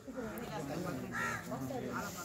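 Men's voices calling across an outdoor kabaddi court, with a short harsh crow's caw about a second in.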